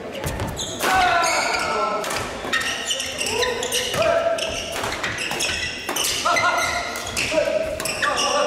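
Badminton doubles rally: repeated sharp racket hits on the shuttlecock, mixed with short squeaks of court shoes on the wooden floor as players lunge.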